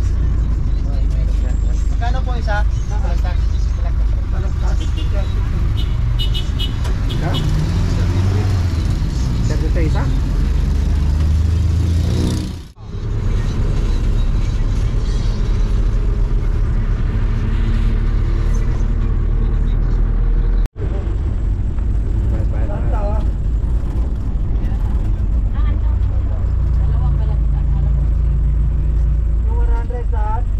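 Passenger jeepney's diesel engine and road noise heard from inside the open-sided cabin, a loud steady rumble whose engine note climbs between about seven and eleven seconds in as it picks up speed. The sound drops out sharply for a moment twice, near the middle and about two-thirds of the way through.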